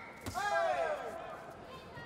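A single sharp thud about a quarter second in, then several voices shouting at once for about half a second, falling in pitch.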